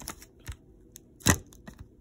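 Hard plastic graded-card slabs clicking and clacking against each other as they are handled and shuffled in a stack. There are a few light clicks and one louder clack a little past a second in.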